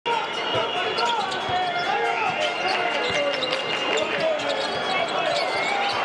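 Live arena sound of a basketball game: a ball bouncing on the hardwood court now and then, under a steady chatter of crowd voices.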